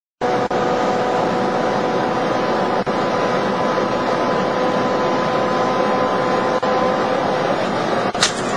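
Loud, steady road and wind noise inside a car cabin at very high speed, with a constant whine at a fixed pitch. The sound dips out briefly three times.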